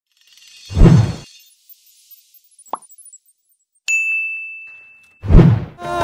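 Intro sound effects: a deep boom with a glittering shimmer about a second in, a short blip, then a single bell-like ding that rings out and fades. A second deep boom comes just before the music starts.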